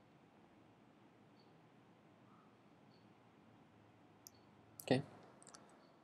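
Faint, scattered computer mouse clicks over quiet room hiss, with a few sharper clicks coming close together about four to five seconds in.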